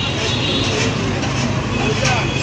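Street traffic noise with the steady low hum of a nearby vehicle engine running.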